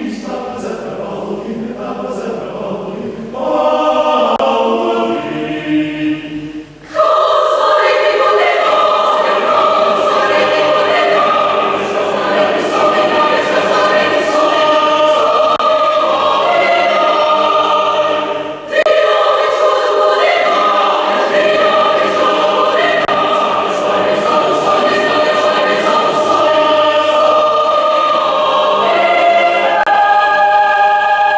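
Large mixed choir singing sustained chords, softer at first, then coming in loud and full about seven seconds in; after a brief break a little before the twentieth second it swells straight back to full strength.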